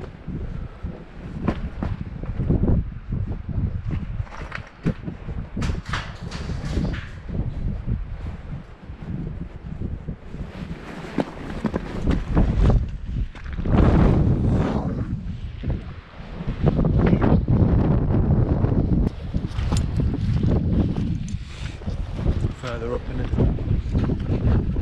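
Wind gusting on the microphone, with crunching and clinking of loose slate stones underfoot as someone scrambles over rocks.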